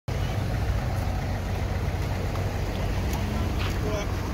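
Steady street noise: a low, even engine rumble from vehicles idling nearby, with faint voices near the end.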